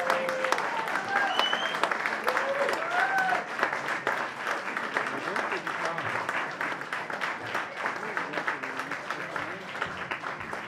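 Audience applauding, with scattered shouts and whoops over the clapping in the first few seconds, slowly dying down.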